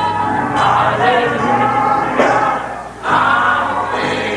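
Live gospel music: many voices singing together over sustained instrumental chords, with a brief dip in loudness just before three seconds in.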